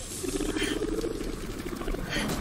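A rapid, rattling chitter, like a creature's call, lasting most of two seconds, from the episode's soundtrack. It is most likely the giant alien insect that appears on screen just after.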